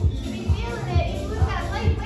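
Upbeat workout music with a steady kick-drum beat, a little over two beats a second, and a singer's voice over it.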